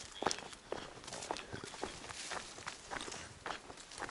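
A hiker's footsteps on a narrow dirt forest trail, a steady walking pace of about two steps a second.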